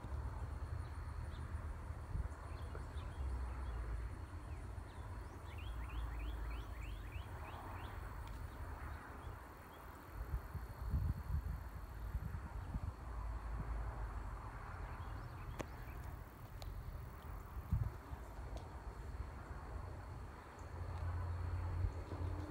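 Outdoor background with a low, uneven rumble on the microphone and faint bird calls: a quick run of short high notes near the start and again about six seconds in.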